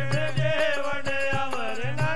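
Sikh devotional kirtan: a man singing a shabad with gliding, ornamented pitch over steady harmonium tones, with dholak drum strokes.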